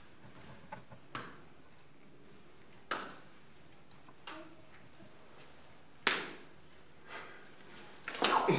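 Quiet room with a handful of scattered sharp taps and knocks, the loudest about three and six seconds in, each dying away quickly.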